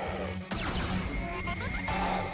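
Action music score mixed with battle sound effects: slugs fired through the air and a creature's shrill cry as a slug transforms.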